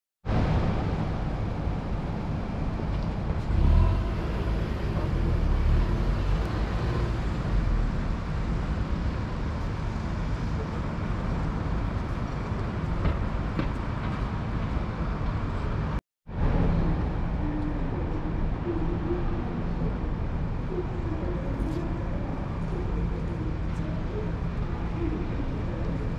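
City street traffic noise: a steady hum of engines and tyres, with one vehicle passing louder and lower about four seconds in. The sound drops out completely for a moment a little past halfway, then the same traffic noise carries on.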